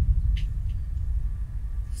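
A deep, low rumble from the drama's sound design, starting suddenly and slowly fading. There is a faint click about half a second in.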